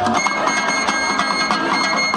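Georgian folk ensemble music: plucked long-necked lutes keep up a quick rhythm under a high, steady melody line, with a new held note coming in just after the start.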